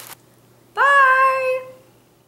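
A single drawn-out, high-pitched vocal call about a second long, sliding up at the start and then held level.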